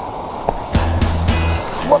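Music with a steady low bass line and sharp drum-like hits cuts in suddenly about three quarters of a second in, over steady background noise. A man's voice starts an exclamation right at the end.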